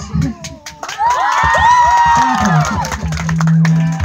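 Audience cheering and whooping, many high voices rising and falling together for about two seconds, with clapping. A low steady hum follows near the end.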